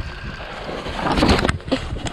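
Wind rumbling on the microphone over the clatter of a mountain bike rolling down a rocky trail, with a run of sharper knocks and rattles about a second in.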